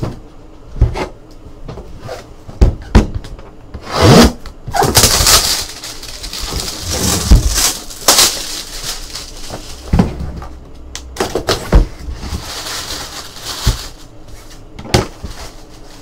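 Plastic shrink-wrap being torn and crinkled off a cardboard box, with sharp knocks from the box being handled. Paper rustles as the box is opened.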